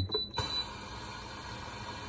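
Espresso machine with its steam knob opened and the steam wand failing to steam. There is a brief thin high tone and a light click in the first half-second, then only a steady low background hum with no steam hiss.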